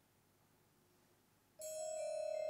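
Near silence, then about one and a half seconds in, a mallet percussion instrument strikes two notes almost together, and they ring on loudly, opening the piece.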